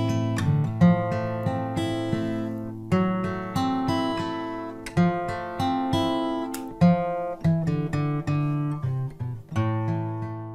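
Acoustic guitar played solo, chords and single notes struck every second or two and left to ring out.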